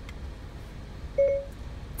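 Siri's listening chime played through the car's audio system: one short electronic beep a little over a second in, after the steering-wheel voice button is pressed, with a faint click near the start.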